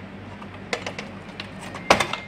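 A few small plastic clicks and knocks as a hand works a power-supply connector loose from a desktop motherboard socket, with one loud sharp click near the end.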